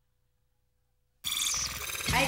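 About a second of silence, then a bright, chiming jingle cuts in suddenly, with a short falling glide near its start: the opening sting of a TV show's logo bumper.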